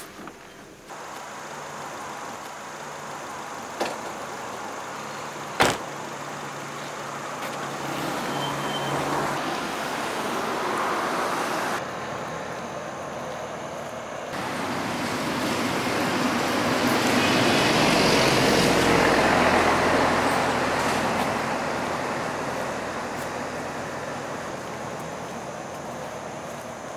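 Road traffic: a passing vehicle whose noise swells to a peak about two-thirds of the way through and then fades away, over a steady background of road noise. A single sharp knock sounds about six seconds in.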